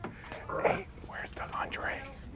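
Faint, low voices talking quietly in the background.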